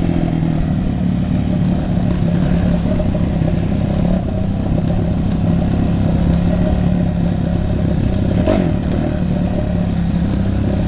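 Dirt bike engine running at a fairly steady throttle under the rider, heard close up from a camera mounted on the bike, with the clatter of the bike over a rough trail. A short knock stands out about eight and a half seconds in.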